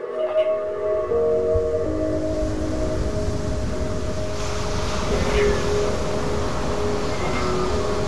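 Big ocean surf breaking over shoreline rocks, a steady heavy rush of white water pouring off them. Background music of held chords plays over it, changing a couple of times in the first two seconds.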